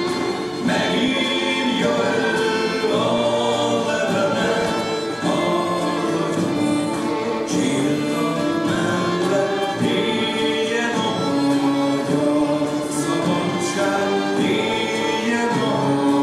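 Dance music with singing voices, playing steadily for a couple dance on stage.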